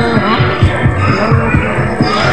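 Background music with a steady, thumping bass beat.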